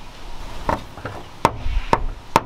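A metal ring door knocker rapped against a door three times, slowly and evenly, each a sharp knock.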